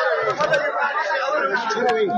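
Crowd chatter: many men's voices talking over one another at once.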